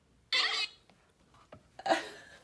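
A child's brief, high-pitched vocal sound about a third of a second in.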